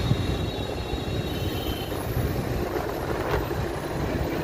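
Steady low rumble of road traffic and lorry engines at a highway roadside.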